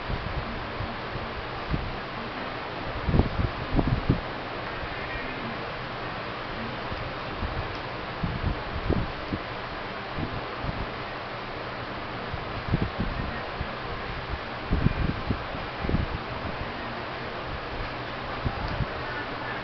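Electric desk fan running with a steady rushing hiss, its air buffeting the microphone in irregular low rumbles, clustered about three to four seconds in, near nine seconds and around fifteen seconds.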